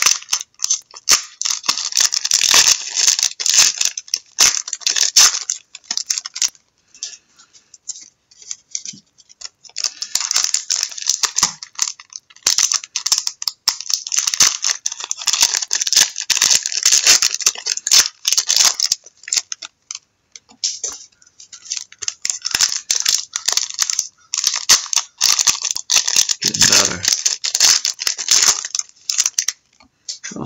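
Trading card pack wrappers being torn open and crinkled by hand, in long crackling stretches broken by short pauses about a quarter of the way in and around two-thirds through. The packs are tough to open.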